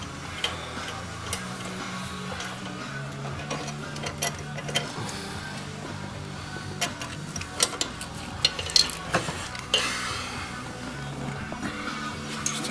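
Background music playing, with scattered sharp clicks and scrapes of a metal pick digging white, caulk-like coolant deposits out of a cylinder head's coolant passage.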